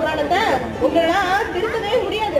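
Speech only: a performer speaking into a stage microphone.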